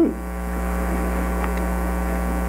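Steady electrical mains hum and buzz in the sound system's recording, a fixed low drone with a ladder of steady higher tones above it, swelling a little at the start and then holding level.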